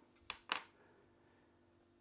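Two light metallic clinks about a fifth of a second apart, the second louder with a brief high ring: small metal parts and tools handled on a metal workbench while brass rivets are set into a drilled brass strip.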